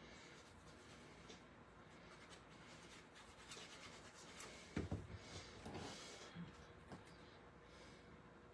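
Near silence, then faint handling of cardstock on a craft mat in the second half: a soft knock a little before the five-second mark and light rubbing and rustling of paper as a white cardstock panel is laid on the folded card base.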